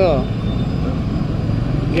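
A man's voice trails off, then a steady low rumble of outdoor background noise fills the pause until speech resumes at the end.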